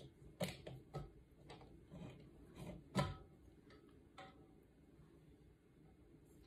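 Light, irregular clicks and taps from the lid of a stainless steel water bottle being handled and fitted, the loudest about three seconds in.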